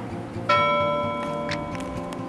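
A single bell chime struck about half a second in, ringing on and fading slowly.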